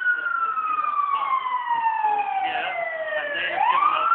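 An emergency vehicle's siren wailing: its pitch falls slowly for about three seconds, then rises again near the end.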